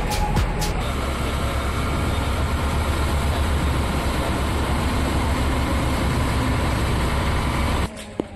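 Boat engine running steadily with water rushing along the hull, heard on board a passenger ferry. Background music cuts off about a second in, and the engine noise stops abruptly near the end.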